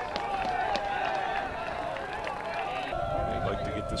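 Voices of players and spectators calling out across an outdoor lacrosse field. About three seconds in, a steady unbroken tone starts and holds, with a low rumble beneath it.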